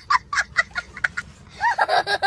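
A young boy laughing hard: a quick run of short, breathy bursts, about five a second, then from about one and a half seconds in, longer high-pitched laughs that bend up and down.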